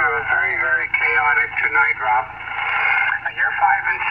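A man's voice received over single-sideband shortwave radio on the 40 m band: thin and narrow-sounding, cut off above and below, coming from a Yaesu FT-897 transceiver's speaker.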